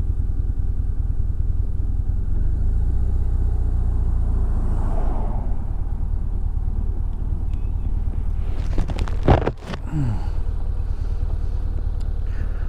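Motorcycle engine running steadily on the move, heard from the bike with wind and road noise. The sound dips briefly about nine seconds in.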